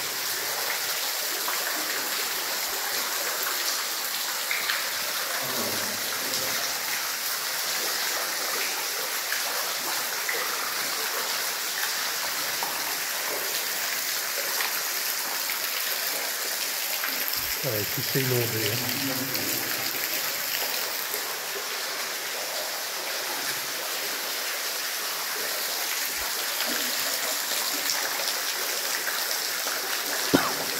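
A small cascade of water running steadily underground: a continuous, even rushing hiss.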